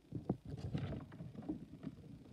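Soft, irregular rustling with a few light knocks of a hand and pen moving over a paper notebook.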